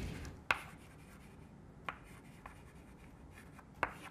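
Chalk writing on a blackboard: a few sharp taps of the chalk striking the board, the loudest about half a second in and the others spread through the rest, with faint scraping between them.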